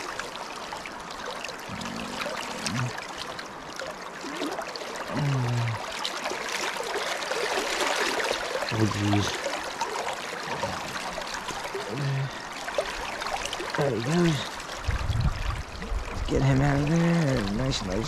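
Shallow creek water rushing and splashing close by, loudest around the middle while a netted brown trout is handled in the water. A man's voice makes a few short sounds, running on more near the end.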